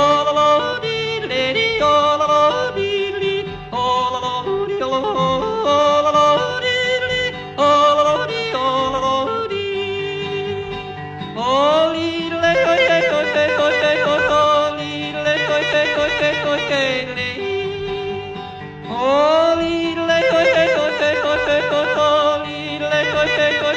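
Male cowboy-style (non-Alpine) yodeling in a country folk recording: rapid leaps in pitch at first, then longer held, wavering notes that swoop upward about halfway through and again near the end, over a steady instrumental backing.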